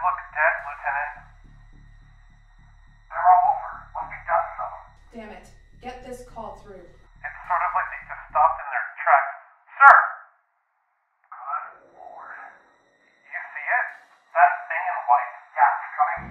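Voices squeezed through a thin, radio-style filter, as over a two-way radio. Under them a low pulsing music bed runs and stops about halfway through, and a sharp click comes near the middle.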